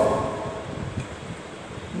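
A man's voice trails off at the very start, then a low, uneven rumble of background noise fills the pause in speech.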